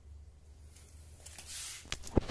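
Charger cable and its plug being handled and pushed into the scooter battery's connector: faint small ticks, then a brief scraping rustle and a sharp click near the end, over a faint steady low hum.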